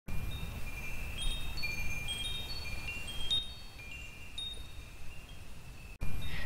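Chimes ringing: scattered high, clear tones struck at irregular moments and left to ring over one another, growing sparser and quieter after about three seconds, over a low rumble.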